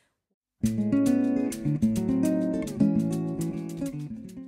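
Background music that starts suddenly about half a second in, after a moment of silence, playing a quick run of notes over a sustained low line.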